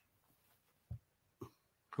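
Near silence over a video call, broken by two short, faint sounds from a person about half a second apart, like a small cough.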